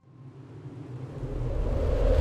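Logo sound effect: a deep rumble that swells steadily louder from near nothing, with a rising hiss building above it, like a whoosh building up.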